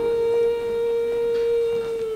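Instrumental background music holding a single long note steady in pitch.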